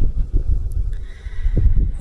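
A pause in the speech filled by a low rumble with a few soft knocks, the kind of handling and room noise picked up by a handheld microphone, and a faint steady high whine in the second half.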